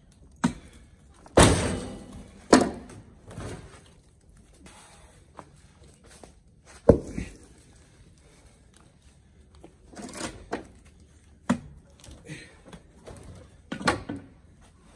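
Firewood blocks being worked off a pickup truck bed with a Fiskars hookaroon: the steel hook striking into the wood, and heavy blocks knocking on the bed and dropping to the ground. There are about half a dozen separate thuds and knocks with pauses between them, the loudest about a second and a half in and another near seven seconds.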